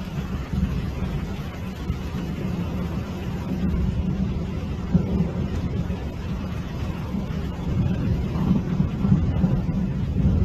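Steady low rumbling roar of a muddy river in flood rushing through a rocky canyon, with wind buffeting the microphone.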